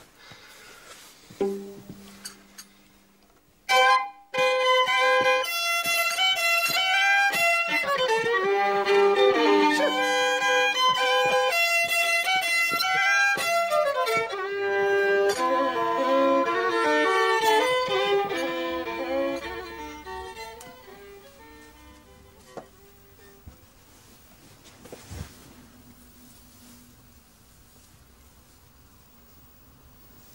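Violin played solo: a quick tune of short, changing notes that starts about four seconds in and fades away some sixteen seconds later.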